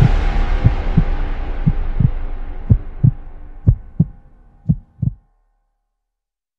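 Heartbeat sound effect: low double thumps about once a second over a fading music drone, both stopping a little after five seconds in.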